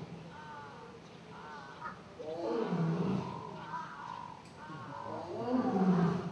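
Lion roaring: two long, deep calls about three seconds apart, each swelling and falling away, the second the louder.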